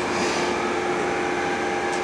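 Steady room noise: an even hiss with a faint, unchanging hum, like an air-conditioning or fan drone, with no speech.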